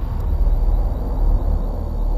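A steady low rumble with a faint hiss over it, fairly loud, with no speech.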